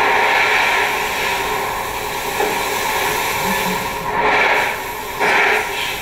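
Masses of Swiss five-rappen coins pouring from a hanging bulk bag onto a heap of coins in a truck bed: a steady rushing hiss of metal on metal, swelling louder a few times.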